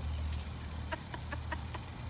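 Women laughing helplessly, stifled behind a hand: a quick run of short, separate bursts of laughter with no words.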